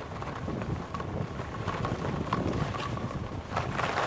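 Wind buffeting the camera microphone while skis slide over packed snow on a downhill run, with short scrapes of the edges. Near the end the hiss of the skis grows louder as a turn begins.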